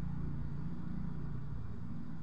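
Steady low rumble of a Boeing 737's jet engines, heard from afar as the airliner rolls down the runway on its takeoff run.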